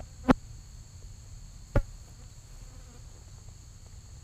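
Steady high-pitched chirring of crickets or other insects in the grass, with two sharp clicks about a second and a half apart, the first just after the start, louder than the chirring.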